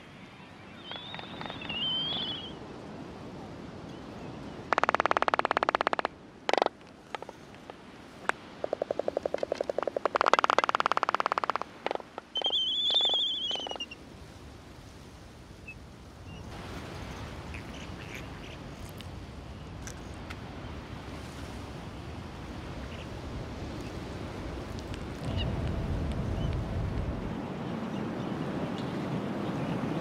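Albatrosses calling in a nesting colony: bursts of rapid rattling and a few high, wavering calls in the first half, then a low, steady rush of background noise.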